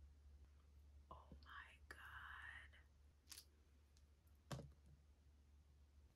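Near silence with a low steady hum. A faint whisper comes about a second in, followed by two soft clicks.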